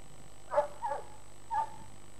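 A dog barking: three short barks within about a second.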